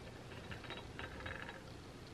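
Faint, scattered light ticks of a plastic straw and tumbler lid being handled.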